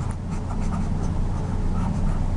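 Light scratching and tapping of a stylus on a drawing tablet as a box is drawn, over a steady low hum.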